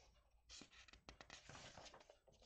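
Faint rustling and brushing of paper as a sketchbook's pages are handled and turned by hand, a few soft strokes with small ticks in the second half.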